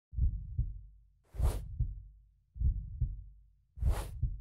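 Heartbeat sound effect: slow lub-dub double thumps, about one pair every 1.2 seconds, with a whoosh laid over every other beat.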